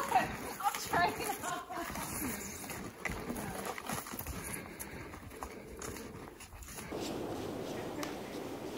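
Snowshoes crunching through snow in a walking rhythm, with trekking poles knocking in, and a voice briefly in the first second. Near the end this gives way to a steadier low hiss.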